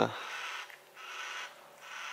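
Yellow-tailed black cockatoo calling: two calls of about half a second each, the second starting about a second in.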